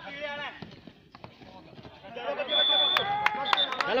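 A kabaddi raider's rapid breath-held chant, then a tackle on the mat. Loud shouting breaks out, with several sharp slaps and a short high referee's whistle blast about two and a half seconds in, and a second brief whistle near the end.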